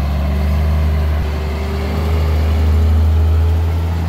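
Scania semi-truck's diesel engine running in a steady low drone as the truck crawls through deep mud.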